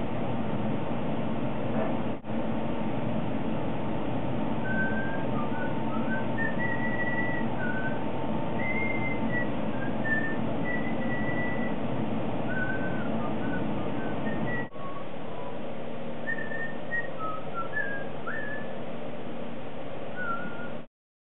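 A person whistling short, wandering notes from about five seconds in, over a steady background hiss and hum, with two brief dropouts in the sound.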